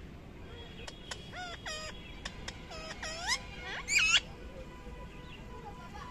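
Rose-ringed parakeet giving a quick run of short chirps and squawks that bend upward in pitch, the loudest two about three and four seconds in.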